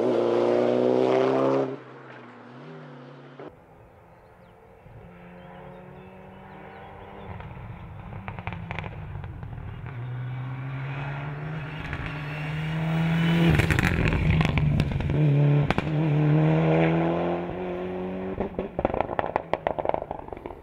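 Rally car engines at high revs on a hill-climb run. A car's engine cuts off about two seconds in. Then the engine of a Mitsubishi Lancer Evolution rally car builds as it approaches and passes, its note rising and falling through gear changes, with sharp exhaust crackles and pops. It is loudest about two-thirds of the way in.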